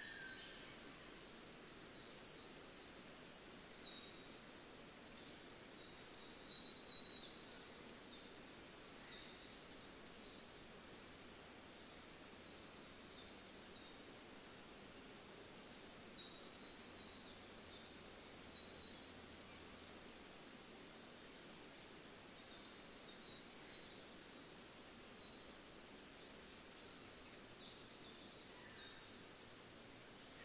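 Faint birds chirping: many short, high chirps falling in pitch, in quick irregular runs, over a low steady hiss.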